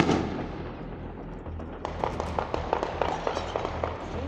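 Gunfire: one loud shot that echoes and dies away, then from about two seconds in a rapid, irregular run of sharp cracks.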